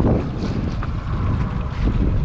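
Wind buffeting the microphone as a steady, uneven low rumble, with the wash of the open sea under it.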